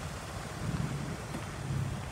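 Wind on the microphone: a low, uneven rumble over a steady outdoor hiss.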